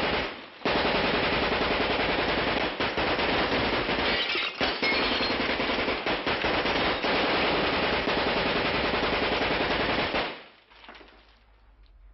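Submachine gun firing one long burst of automatic fire that starts just under a second in, runs for about nine seconds and cuts off suddenly near the end.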